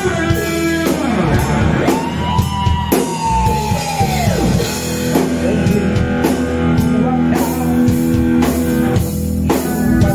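A rock band playing live: electric guitar, bass guitar and a PDP drum kit. A long held high note starts about a second in and slides down about four and a half seconds in.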